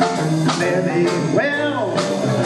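Small traditional jazz band playing live, with a steady low bass line under the melody; a lead line swoops up and back down about a second and a half in.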